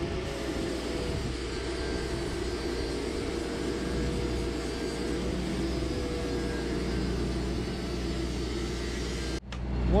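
Arc welding of zinc anodes onto a pier: a steady hiss with a slightly wavering hum beneath. It cuts off suddenly near the end, giving way to a louder low rumble.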